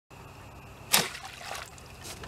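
A bowfishing shot: about a second in, an arrow hits the water and fish with one sharp, loud splash, followed by smaller splashes and dripping water, over a steady low hum.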